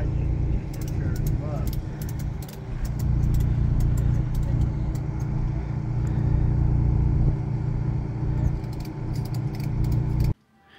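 A steady low motor drone runs throughout, with scattered sharp clicks and faint voices.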